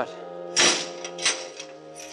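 Heavy palace gates slamming shut: a radio sound effect, a loud crash about half a second in, then a smaller knock, over sustained orchestral music.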